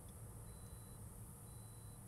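Near silence: faint room tone with a steady low hum.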